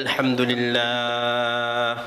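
A man's voice chanting in the melodic sermon style of a waz, a short gliding phrase followed by one long note held steady in pitch.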